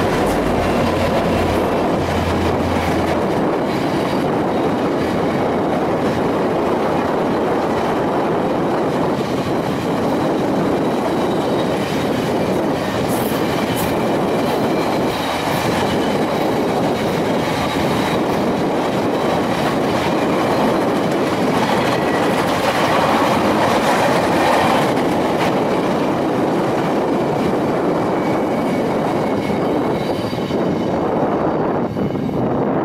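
VIA Rail's Canadian, a long train of stainless-steel passenger cars, rolling past at speed: a loud, steady rumble of wheels on rail. A low engine drone from the diesel locomotives fades out in the first three seconds or so.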